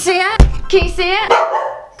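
A dog barking several short times. Two heavy thumps come about half a second and just under a second in, as a hard plastic suitcase is lifted and handled close to the microphone.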